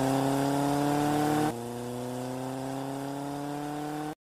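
Outro sound effect: a steady, buzzy pitched drone that slowly rises in pitch, drops in loudness about a second and a half in, and carries on.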